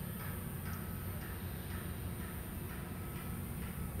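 Steady low background rumble with a few faint ticks.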